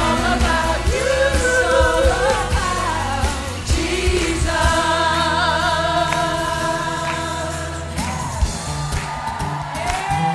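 Several voices of a worship team singing a praise song through microphones over instrumental accompaniment, holding long notes with vibrato above a sustained bass line.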